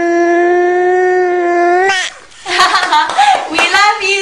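A young child's voice holding one long, steady 'aah' for about two seconds, then a short pause and a few shorter babbled sounds near the end.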